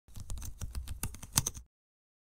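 Computer keyboard typing: a quick, irregular run of key clicks, about ten a second, that stops abruptly about one and a half seconds in.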